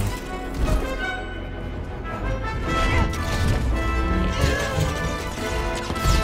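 Orchestral film score under lightsaber fight sound effects, with sudden crashing impacts.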